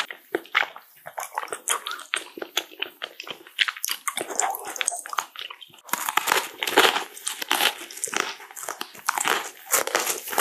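Close-miked crunching bites and chewing of a bundle of green-tea chocolate-coated biscuit sticks, with dense, irregular crisp snaps. The crunching is louder from about six seconds in.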